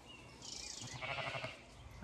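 A sheep bleating faintly once, a wavering call of about a second.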